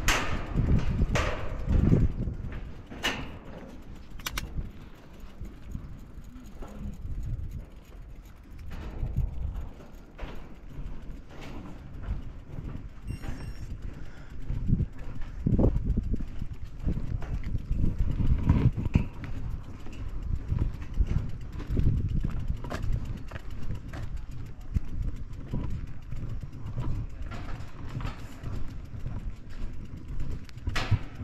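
Bicycle rolling over a steel-grating footbridge deck, its tyres rattling and clicking on the metal mesh over a low, uneven rumble.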